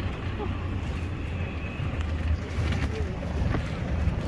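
Steady low engine and road rumble of a moving vehicle, heard from on board, with wind buffeting the microphone.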